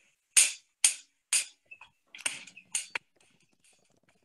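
Sharp percussive hits of a music track's beat, the first three about half a second apart and three more less evenly spaced, with silence between them.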